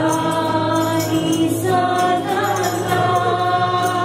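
A church worship team singing together into microphones, backed by strummed acoustic guitars. A tambourine jingles along on the beat.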